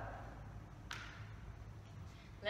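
A single sharp tap about a second in, a footstep on the wooden floor, over a quiet room with a steady low hum.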